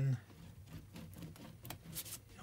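A Pritt glue stick being rubbed over a sheet of card: soft, irregular scraping with a few faint taps.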